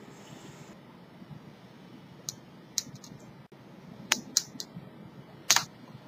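A hand-held steel dental curette clicking and scraping against a tooth as it works off calculus: a few short sharp clicks, irregularly spaced, starting about two seconds in, bunched a little past the middle and with one more near the end.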